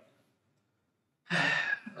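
A pause of about a second, then a short sigh from a man at the microphone, lasting about half a second.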